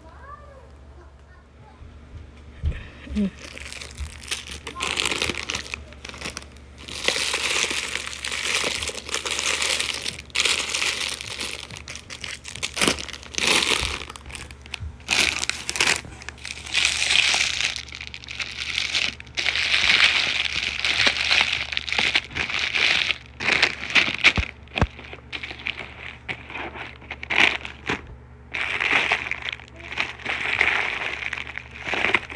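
Plastic candy wrappers and chip bags crinkling and rustling as they are handled, in irregular bursts that start about two seconds in.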